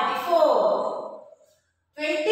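Speech only: a voice saying drawn-out, falling syllables, then a short pause near the end.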